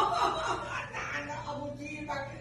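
A person chuckling under their breath: short, held-back snickers that fade over the two seconds.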